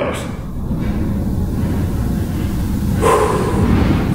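A man's hard breathing under exertion over a low noisy rumble, then a louder, partly voiced strained exhale about three seconds in.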